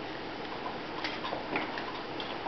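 A few light clicks and taps, most of them about halfway through, from a toddler handling a phone, over a steady background hiss.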